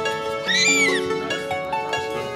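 Background music, with one short high-pitched whine from a small terrier about half a second in, rising and then falling in pitch.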